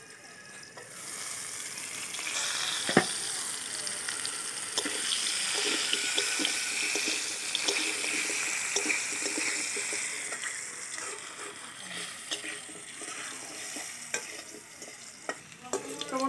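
Potato cubes frying in hot mustard oil in a metal kadai: a steady sizzle that starts about a second in and eases near the end. A metal spatula clacks and scrapes against the pan as they are stirred, with one sharp knock about three seconds in.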